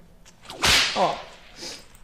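A single whip crack: one sharp swishing snap about half a second in, lasting a fraction of a second.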